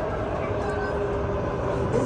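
Kawasaki Heavy Industries–Nippon Sharyo C751B electric train heard from inside the passenger car: a steady rumble of wheels and running gear, with a low hum and faint motor tones, as the train pulls into a station.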